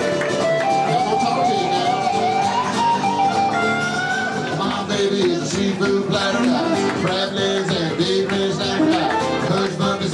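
Band music with no vocal line: an electric guitar plays held, bending lead notes over acoustic guitar and bass, in a blues style.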